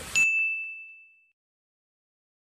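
A single bright ding sound effect: one clear high tone that strikes sharply and fades away within about a second, over a dead-silent soundtrack.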